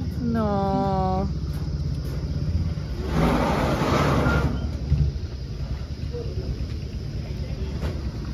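A vehicle engine idling with a low, steady rumble. Near the start a short, level whine-like tone is held for about a second, and a loud rushing noise swells and fades about three to four seconds in.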